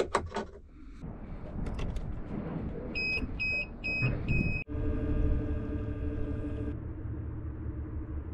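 A few handling clicks and four short electronic beeps, then a steady electric whine of several even tones over a low rumble from a Haswing Protruar 3.0 brushless electric outboard running. The higher tones of the whine drop out about two-thirds of the way through.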